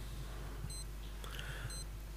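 Pause in speech: a faint high electronic beep repeating about once a second over a steady low hum.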